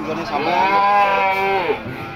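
A young feeder bull mooing: one long call, about a second and a half, that rises and then falls in pitch.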